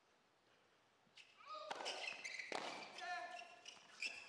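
A tennis point on an indoor hard court: sharp racket-on-ball strikes, the first about a second in, each with the hall's reverberation, and high, short squeaks of tennis shoes skidding on the court between them.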